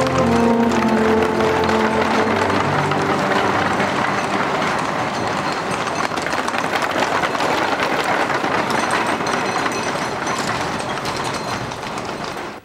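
Soundtrack music with long held notes fades out over the first few seconds, giving way to a busy street ambience: a steady hubbub of crowd noise and many small clattering clicks.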